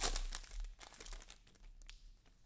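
Clear plastic wrapper of a trading-card pack crinkling as it is pulled open by hand. The crackling is densest in the first half-second and thins to sparse, quieter crackles.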